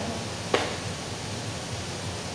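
Steady background hiss of room and microphone noise in a pause between sentences, with one short click about half a second in.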